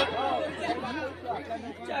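Indistinct voices talking through a stage PA system, over a steady low electrical hum.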